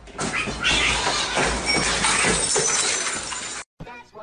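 Loud clattering and rattling as a cat scrambles among objects on a cluttered desk, full of sharp knocks. It cuts off suddenly near the end.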